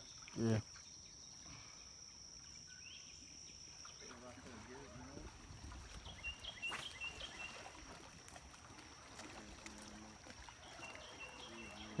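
Quiet outdoor ambience on the water: a steady high insect trill that cuts off about four seconds in, then faint distant voices and a few light clicks.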